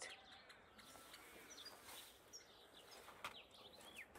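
Near silence: faint outdoor quiet with a few faint, high bird chirps scattered through it.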